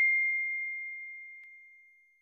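A single high, bell-like chime sound effect rings out and fades away steadily, as a notification-bell ding does. A faint tick comes about one and a half seconds in.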